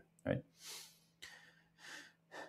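A man says a quick "Right?" and then takes an audible breath in through the mouth, with a fainter breath near the end. A faint steady low hum lies underneath.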